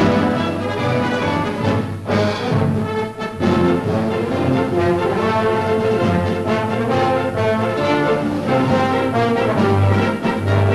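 Orchestral newsreel soundtrack music with prominent brass, playing a lively melody.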